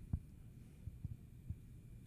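Low steady hum of room tone, with a few faint soft thumps.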